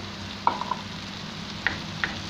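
Vegetables sizzling in a hot non-stick frying pan as a wooden spatula stirs in freshly added chopped tomatoes. Two short clicks come through, about half a second in and near the end.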